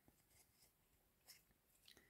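Near silence: room tone, with two faint brief ticks, one about a second in and one near the end.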